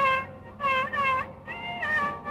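Carnatic violin playing a melodic line in raga Kedaragowla in short phrases, the notes bending and sliding in gamakas, with brief breaks between phrases.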